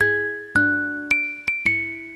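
Background music: a slow melody of bell-like struck notes, about two a second, each ringing and then fading.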